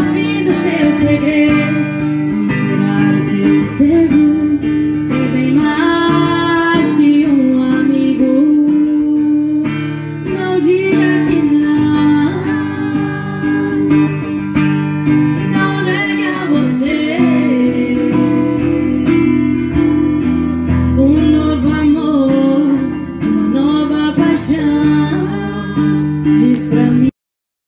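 Live acoustic music: a woman singing into a microphone to a strummed steel-string acoustic guitar, both played through a PA.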